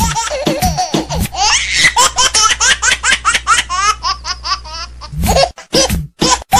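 Hard, high-pitched laughter in rapid bursts, several a second, going on without a break.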